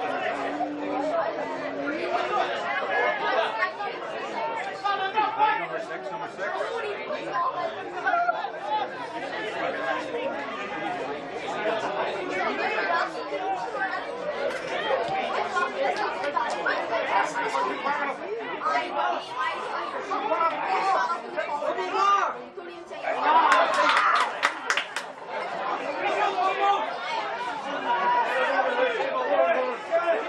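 Many voices talking and calling over one another, the steady chatter of sideline spectators and players during a Gaelic football match, with a louder burst of sharper sound about three-quarters of the way through.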